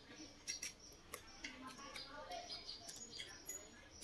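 Quiet eating sounds: chewing with small mouth clicks, and a few light clinks of a metal spoon and fork against the soup bowl and rice plate.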